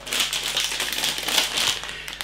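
Plastic snack bag of pork crackling crinkling and rustling as it is handled, a continuous crackly rustle full of small ticks.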